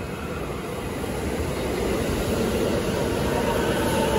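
Commuter train pulling into a station platform and running past close by, its rumble growing steadily louder as it nears.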